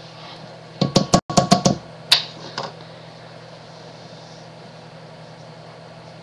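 A quick cluster of knocks and clinks, about a second in, as a measuring cup and utensils are handled against a saucepan and countertop, one knock ringing briefly; then only a steady low hum.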